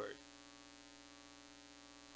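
The last of a man's spoken word at the very start, then near silence with a faint, steady electrical hum.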